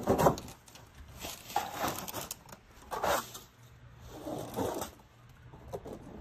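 A sea otter on a small moored boat: irregular bursts of scrabbling and rubbing with a few squeaky sounds, roughly one every second.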